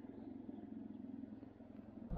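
Faint, steady low rumble of an idling engine.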